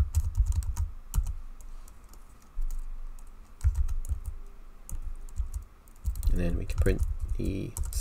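Typing on a computer keyboard: irregular runs of keystrokes with short pauses, the keys clicking with a low thud under each press.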